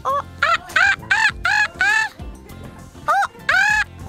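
A run of about eight short, high-pitched monkey-like calls in quick succession, each rising and falling in pitch, with a pause of about a second partway through, over a steady background music bed.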